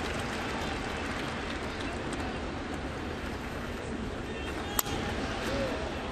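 Steady murmur of a ballpark crowd, then about five seconds in a single sharp crack of a baseball bat as the batter hits a ground ball.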